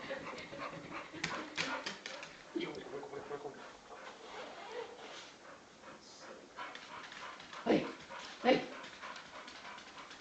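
Chow Chow dog giving two short, loud barks about a second apart near the end, each falling in pitch, after quieter scattered sounds.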